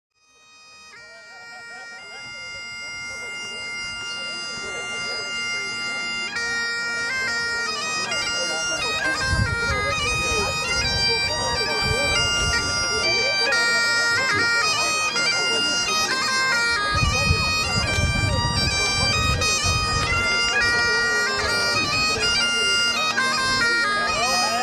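Bagpipes playing a tune over their steady drones, fading in over the first several seconds.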